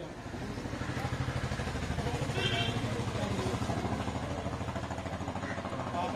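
A small engine running steadily at a low idle with a quick, even beat. It grows a little louder over the first couple of seconds. Faint voices sound underneath.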